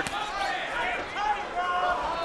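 Arena crowd noise with indistinct shouted voices from around the ring, and a single sharp thump right at the start.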